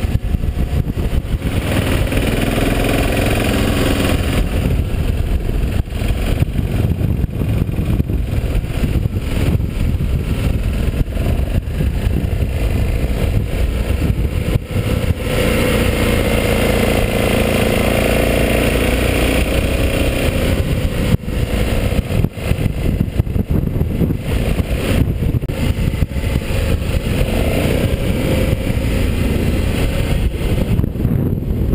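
Motorcycle engine running while riding, heard up close from a camera mounted on the bike, over a steady low rumble. Its pitch rises and falls a few times as the throttle is worked.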